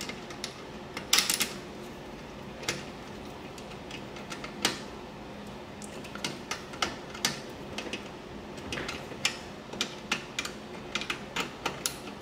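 Screwdriver working a terminal-block screw down onto a stranded copper wire: irregular small metallic clicks and ticks, a cluster about a second in and a denser run in the last few seconds.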